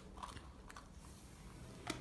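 Near silence: faint room tone, with a small click just before the end.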